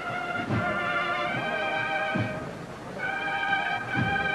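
Band music for a processional march: held wind chords that shift to a new chord about three seconds in, with a few low drum beats.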